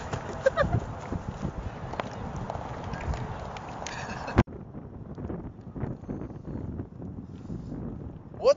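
Scuffle on grass: irregular thuds and rustling over a steady noisy background, with a brief vocal sound about half a second in. The sound cuts off abruptly about four and a half seconds in, and quieter rustling follows.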